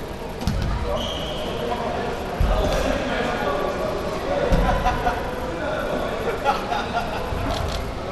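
Four dull, deep thuds a couple of seconds apart, like dumbbells being set down on a gym floor, under background chatter of voices in a large room.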